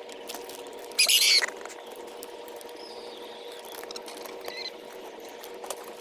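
A bird gives one short, shrill, harsh screech about a second in, followed by two faint high calls later.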